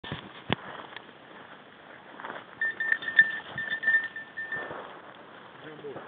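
Swishing and crunching of someone walking through dry grass and brush, with a sharp click near the start. A steady high tone with a few short breaks sounds for about two seconds in the middle.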